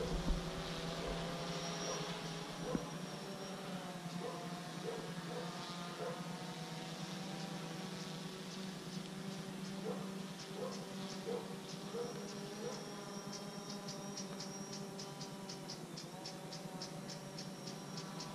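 DJI Phantom 4 quadcopter's motors and propellers buzzing steadily in flight, a multi-toned hum that holds nearly the same pitch throughout. Faint rapid high ticking joins in over the last few seconds.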